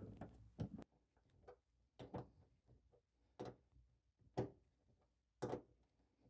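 Faint, irregular clicks about a second apart from a socket ratchet worked in short strokes, driving a 10 mm bolt into the plastic fender liner.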